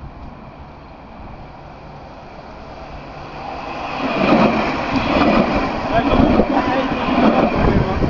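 Alstom Citadis 402 electric tram approaching at full speed and passing close by. It grows louder from about three seconds in and stays loud from about four seconds on as the cars go past.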